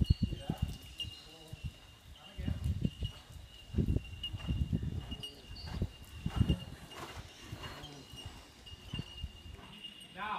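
Muffled hoofbeats of a horse cantering on sand arena footing, irregular low thumps that come and go, under a faint steady high-pitched tone.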